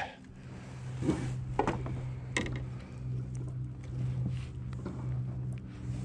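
Handling noise on a kayak: a few scattered knocks, clicks and rustles as a freshly caught bluegill and the fishing tackle are handled, over a steady low hum.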